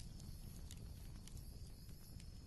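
Very quiet background: a faint low rumble with a few faint scattered ticks.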